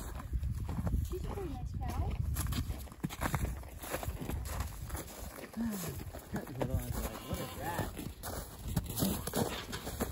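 Cattle and people moving about a pen on packed snow and hay: scattered hoof and footstep knocks, with short pitched sounds now and then.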